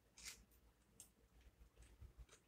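Near silence with faint chewing: a few soft mouth clicks from someone eating a blackened chicken strip.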